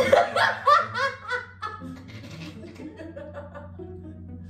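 Young women laughing: a quick run of loud laughs in the first second and a half, then dying down to quiet chuckles.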